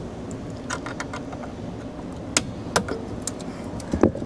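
Small plastic clicks and rattles of wiring-harness connectors being unplugged and handled, a cluster about a second in and a few sharper single clicks in the second half, over a low steady background hum.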